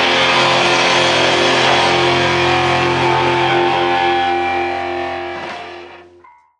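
Live rock band's electric guitars holding a sustained chord that rings on, ending the song, then fading out near the end.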